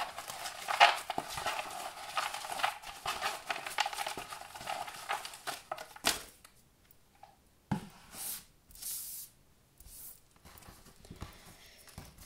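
A hand stirring through a box of paper sticker cutouts: a dense rustle and crackle of paper with many small clicks for about six seconds. Then a few separate light taps and short swishes as cutouts drop onto a wooden board.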